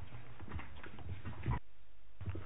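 Faint handling noises at a meeting table, papers and light bumps, with one sharper knock about one and a half seconds in; the sound then drops out almost completely for a moment.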